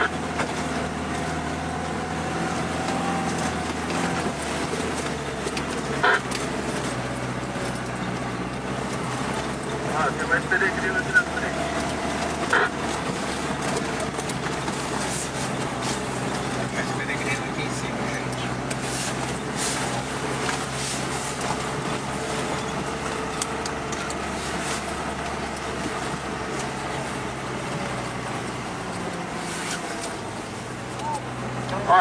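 Lada Niva engine running steadily, heard from inside the cabin while driving on a rough dirt road, with a few short knocks and rattles from the body over the bumps.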